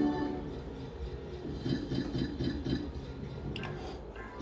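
Electronic game music from a Novoline Book of Ra slot machine. A held chime tone fades out at the start as the bonus symbol is set, then a quick rhythmic jingle of about four notes a second plays once the free-game reels spin.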